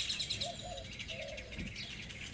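Birds chirping in quick repeated trills, with a few short low calls in the first second and a half.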